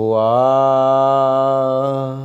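A man's voice holding one long, steady chanted note that starts abruptly and eases off slightly near the end.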